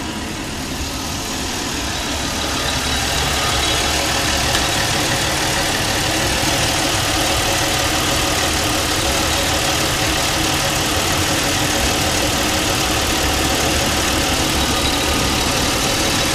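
Car engine idling steadily. It grows a little louder over the first few seconds, then holds even.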